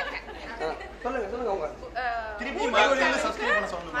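Several people talking over one another in a large room, with laughter-like chatter and no other distinct sound.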